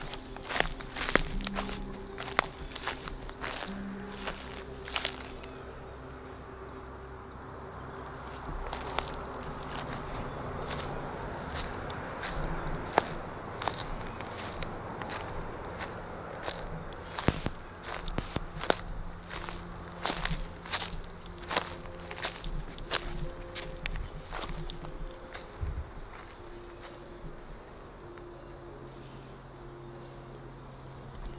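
Footsteps through grass and dry twigs, irregular steps with sharp snaps, over a steady high-pitched insect chorus.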